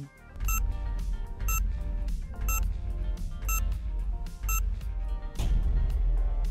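Quiz countdown timer ticking five times, about one tick a second, over background music with a heavy steady bass. A rising sweep comes near the end as the count runs out.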